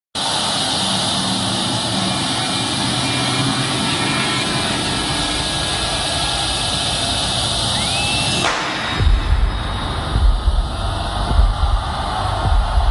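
A steady wash of noise from a large stadium crowd. About eight seconds in it gives way to a falling whoosh, followed by deep, uneven low booms.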